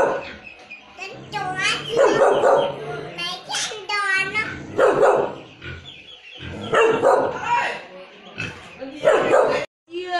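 A dog barking repeatedly in short bursts, with a small child's raised voice shouting back at it in between.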